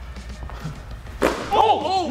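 A single sharp thud a little over a second in, against a low steady hum, followed near the end by a man's shout.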